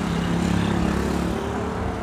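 Road traffic: a motor vehicle's engine running nearby, a steady low hum that eases off near the end.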